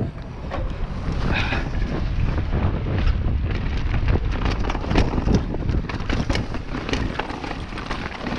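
Mountain bike riding fast down a dirt trail: wind buffeting the camera microphone and tyre rumble, with frequent sharp clicks and rattles from the bike over the rough ground.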